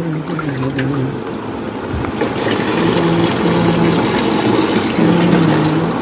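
Red sweetened drink sloshing and splashing as it is stirred and scooped by hand with a plastic jug in a large plastic tub. A low droning tone comes and goes behind it.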